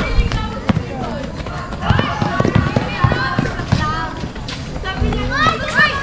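Players and onlookers shouting and calling out during a basketball game, with scattered sharp thuds and knocks of the ball and feet on the court.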